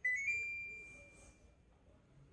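LG Dual Inverter split air conditioner indoor unit beeping as it is switched on: a two-note electronic chime, a short lower note stepping up to a higher one that fades over about a second and a half, the unit's signal that it has taken the power-on command.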